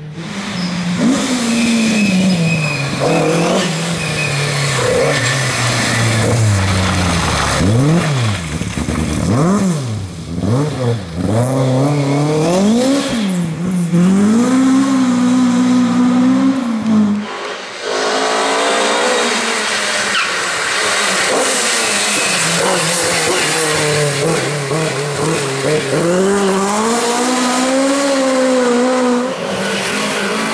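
Ford Escort Mk2 rally car's engine revving hard, its pitch climbing through each gear and dropping sharply on the shifts and lifts, with quick rises and falls for the corners. About two-thirds through it dips briefly, then climbs again as the car accelerates past.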